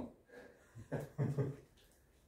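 A man laughing, a few short voiced bursts in the first second and a half.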